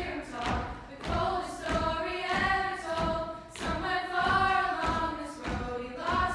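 Female a cappella group singing in sustained close harmony over a steady thumping beat, about two beats a second.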